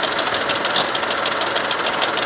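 Tractor engine running steadily with a fast, even clatter while its raised tipping trailer unloads snow.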